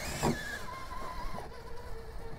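Electric drive motor and geartrain of an Axial SCX-6 Honcho RC rock crawler whining under load as it claws up a rock ledge. The pitch swings up and back down at the start with the throttle, then holds steady before dropping to a lower steady whine.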